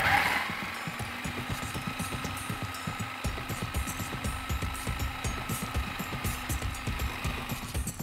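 Electric food processor running with a steady motor whine, its blade chopping green herbs in the bowl. Background music with a beat comes in about three seconds in.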